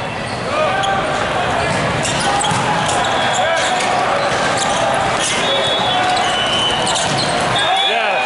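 A volleyball rally in a large, echoing sports hall: sharp smacks of hands on the ball and sneaker squeaks on the court, over a constant chatter of many voices from the surrounding courts and spectators.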